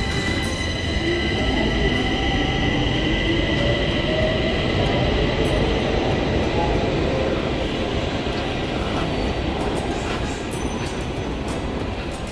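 Metro train running at the platform: a steady noise with thin high whining tones, growing a little louder in the first few seconds, with music playing under it.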